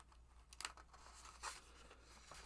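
Faint rustling of a sheet of paper being lifted and flipped over on a board: two brief rustles about a second apart.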